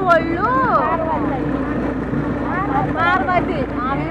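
People talking, their voices coming and going, over a steady low hum.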